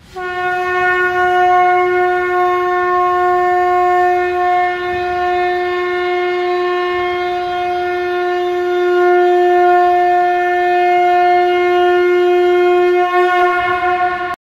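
Conch shell (shankh) blown in one long, steady note, held unbroken for about fourteen seconds.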